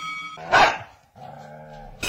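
A dog barks once, loud and short, about half a second in, then gives a lower, drawn-out vocal sound near the end. The last of a ringing bell fades out at the start.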